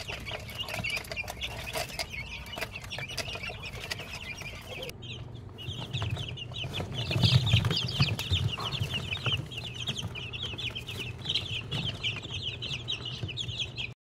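A brood of young chicks peeping continuously, many short high chirps overlapping in a rapid chatter. A low hum runs underneath and grows louder about halfway through.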